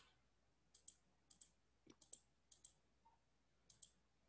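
Faint computer mouse clicks, coming in five quick pairs spread through the few seconds.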